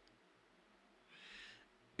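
Near silence: studio room tone in a pause in the talk, with a short, faint hiss just past a second in.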